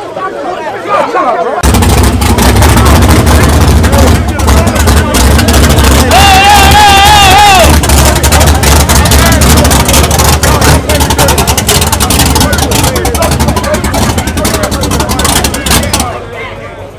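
A drag car's engine running loud at close range, starting suddenly about two seconds in, with a deep, steady pulse. A wavering high tone sounds over it for about a second and a half near the middle, and crowd voices are heard throughout.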